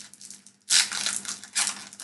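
Foil booster-pack wrapper crinkling in the hands as it is handled to be opened, in two short bursts of crackle: one about two-thirds of a second in and another shortly after.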